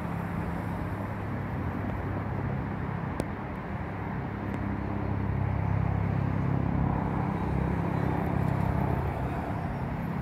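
A vehicle engine running with a low, steady hum that grows louder about five seconds in.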